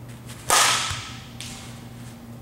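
A bat hitting a ball on a full swing: one sharp, loud crack with a brief ringing tone that fades over about half a second, followed by a softer impact just under a second later.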